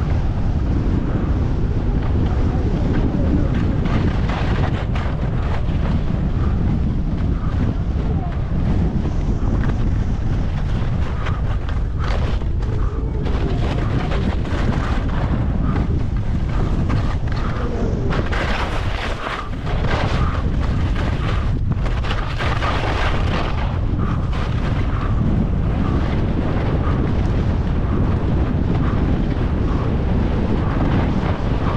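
Wind buffeting a GoPro's microphone on a fast snowboard run, over the steady hiss and scrape of the board sliding on chopped, packed snow. The scraping grows harsher in stretches around the middle of the run.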